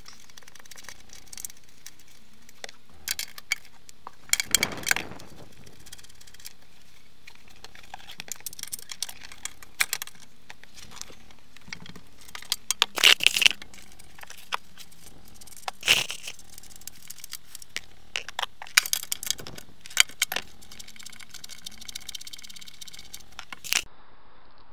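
Irregular metallic clicks, clinks and rattles of a hand tool and loose flanged nuts as the four mushroom bolts holding a VW T4 seat base to the floor are undone and the nuts set down.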